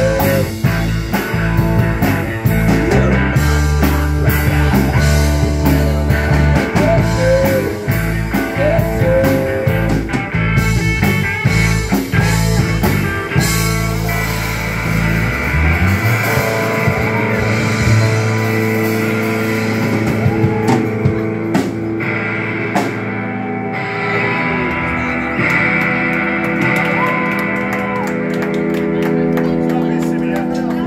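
Live rock band playing electric guitars over a drum kit with strong low end and steady drum hits. About halfway through, the low end and most of the drumming drop away and the guitars carry on with long, ringing held notes as the song winds down.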